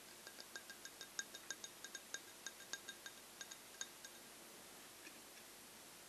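Fingernails tapping quickly on a drinking glass of water, about five or six light taps a second for some four seconds. Each tap rings briefly with the glass's clear pitch. One last faint tap comes near the end.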